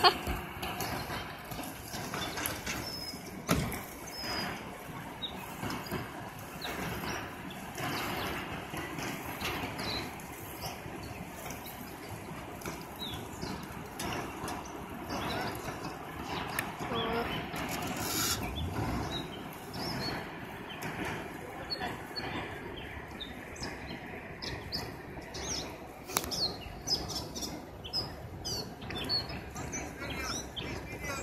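Riverside ambience: a steady low background with faint distant voices, and small birds chirping, more often near the end.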